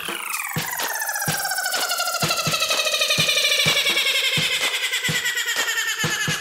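Electronic hip-hop instrumental in a breakdown: the deep bass drops out at the start, leaving a sustained electronic chord that slowly slides down in pitch over a light tick about four times a second.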